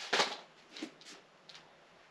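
Light handling noise of craft supplies on a tabletop: a short rustle and clatter just after the start, then a few faint clicks.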